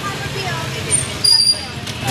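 Motorcycle engine idling steadily at a standstill on a street, with a brief high-pitched squeal a little past halfway.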